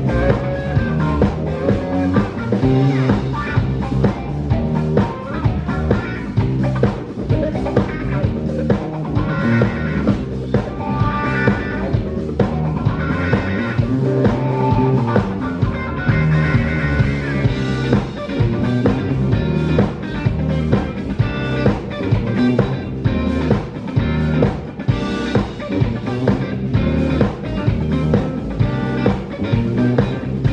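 Live psychedelic rock band playing an instrumental passage: electric guitars over a steady drum-kit beat.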